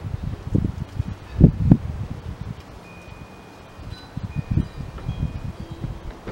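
Wind gusting on the microphone, in irregular low rumbles. A few thin, high ringing tones sound faintly near the middle.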